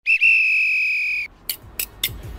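Countdown timer's end beep: one steady, high electronic tone lasting just over a second as the count reaches zero, then stopping abruptly, followed by two short clicks.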